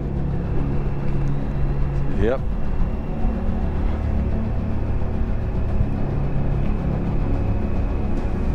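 Motorcycle engine running steadily at cruising speed, with wind and road noise, heard from the bike while riding. A short spoken reply comes about two seconds in.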